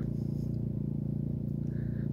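A steady low hum with even overtones, unchanging throughout.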